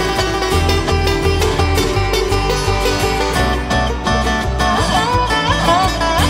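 Bluegrass string band playing live in an instrumental break: plucked strings over regular low bass notes, with sliding lead notes coming in about halfway through.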